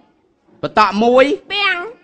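A short silence, then a voice speaking in drawn-out, sliding tones.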